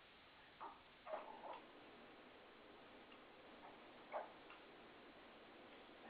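Near silence: the faint hiss of an open conference phone line, with a few faint clicks about a second in and again near four seconds.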